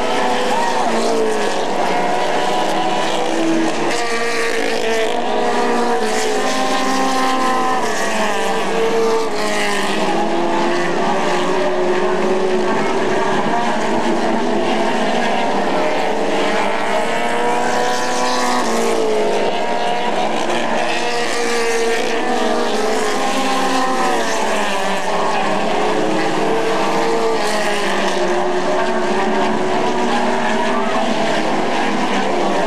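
Pro Stock dirt-track race car engines racing at speed, several at once, their pitch rising and falling over and over as they lift and accelerate around the oval.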